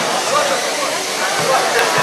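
Steady whirring hiss of competition robots' motor-driven ball launchers running during play, under a murmur of crowd voices.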